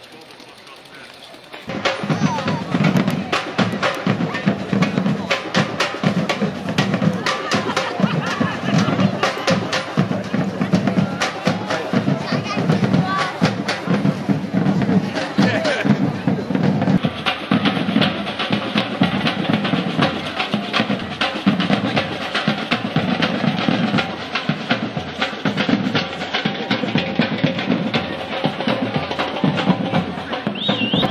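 Street drum band playing a busy rhythm on snare and bass drums, cutting in suddenly about two seconds in.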